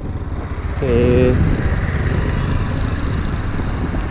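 Suzuki GD 110S motorcycle's single-cylinder four-stroke engine running steadily under way, heard from the rider's seat, with a brief vocal sound about a second in.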